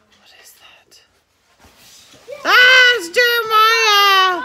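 Faint whispering, then about two seconds in a child lets out a loud, long, high-pitched squeal that breaks off briefly and carries on.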